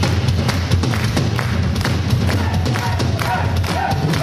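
Live heavy metal band playing loud through a club PA, with a heavy bass low end and repeated drum hits.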